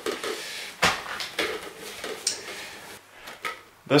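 A cloth bag rustling as it is rummaged through, with several short knocks and clatters of objects being handled.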